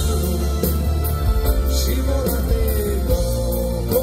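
Live pop ballad played by a band with drums, bass, electric guitar, keyboards and a violin section, with a held melody line over a steady bass.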